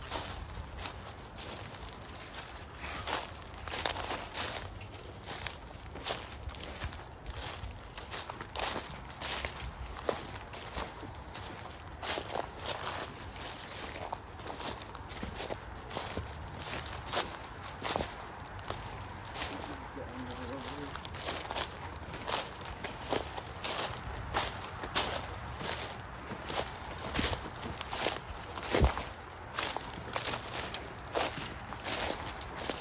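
Footsteps walking through dry leaf litter on a woodland path, a short rustle with each step at an uneven walking pace.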